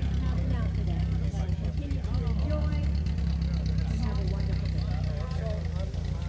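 An engine running steadily at idle, a low hum, with people talking around it.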